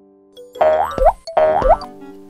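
Two springy cartoon 'boing' sound effects, each a quick rising pitch sweep, about a second apart, over a held keyboard chord.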